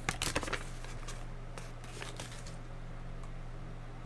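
A steady low electrical hum with a few faint clicks, several in the first half second and a couple more a second or two later.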